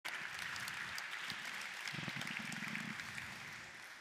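Audience applauding: a dense patter of many hands clapping that slowly dies away.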